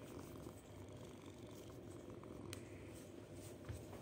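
Ginger tabby kitten purring steadily and faintly while being stroked, with a sharp click about two and a half seconds in.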